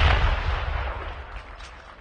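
Booming echo of a ceremonial salute cannon's blank shot, a low rumble that fades away over about a second and a half.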